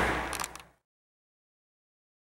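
A loud, even rushing noise fades out in the first moments, then cuts to complete silence.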